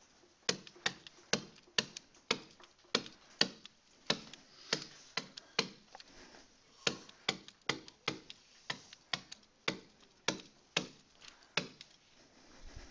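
Stylus tapping against a hard writing surface with each handwritten stroke: sharp, irregular clicks, about two a second.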